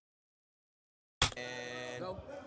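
Total silence for about a second, then a ringing bell tone starts suddenly and holds. This is the boxing ring bell signalling the start of round three.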